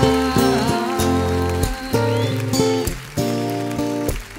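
A live band playing an instrumental passage of a pop ballad without singing, with held bass and chord notes under bright cymbal-like high sounds.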